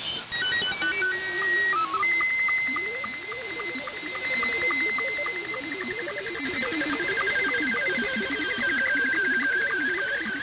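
Digital data tones received off a shortwave broadcast through an SDR: an SSTV transmission in Scottie 2 mode opens with a short run of stepped beeps and a held tone, then goes into its image-scan tone, a steady high whistle with evenly spaced sync ticks. Under it runs the lower warbling of THOR22 text data near 400 Hz, with band noise behind both.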